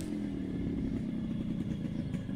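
Yamaha RX-series two-stroke single-cylinder motorcycle engine running steadily at low revs.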